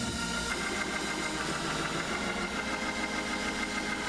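Organ holding sustained chords under a pause in the preaching, changing to a new chord about half a second in.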